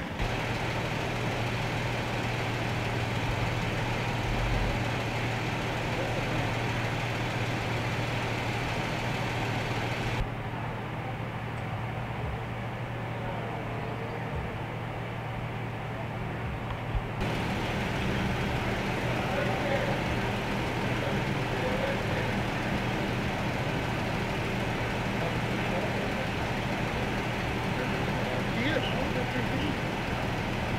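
Police vehicles idling at a street scene: a steady low engine hum under a constant background noise, with faint voices.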